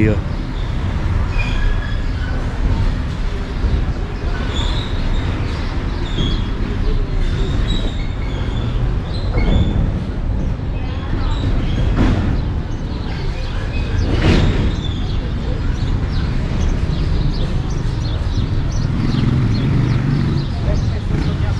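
Outdoor street ambience on a walk: a steady low rumble throughout, with short high bird chirps scattered over it, faint voices of people nearby and a few sharp knocks near the middle.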